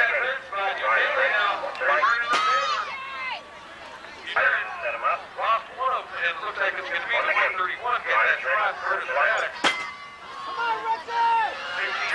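A race announcer talking over a public-address system, with two sharp clicks, one about two seconds in and one near ten seconds in.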